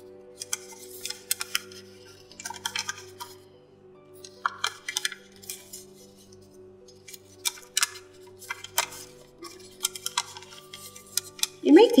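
Origami paper crackling and rustling in short bursts as it is creased and folded by hand, over soft background music of steady held tones.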